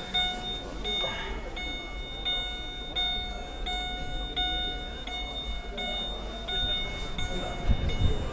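Chevrolet Captiva's electronic warning chime repeating steadily, a bell-like tone about one and a half times a second.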